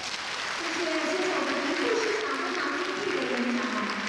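An audience applauding at the end of a talk, with a voice speaking over the clapping from about half a second in.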